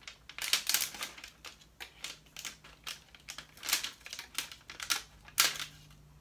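Thin protective plastic film crinkling and crackling in quick irregular bursts as it is peeled off a drone's remote controller, with one louder crackle near the end.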